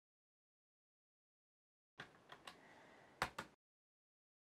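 Dead silence, then from about halfway through a few faint clicks and taps as hands handle a mini PC's bottom cover and its screws, ending in two sharper clicks in quick succession.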